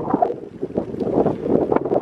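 Wind buffeting the microphone of a camera carried on a moving bicycle, an uneven rumbling that rises and falls in gusts.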